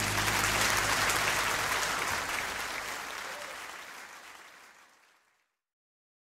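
Audience applauding at the end of a jazz vocal number, with the band's final low chord dying away under it in the first two seconds; the applause fades out about five seconds in.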